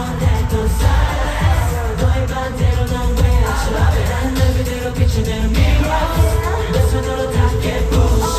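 K-pop song playing over an arena sound system: a pop track with a heavy bass beat and singing, carried by the arena's echo.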